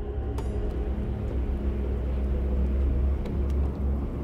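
A low, steady rumbling drone of dark film underscore, with a few faint held tones above it.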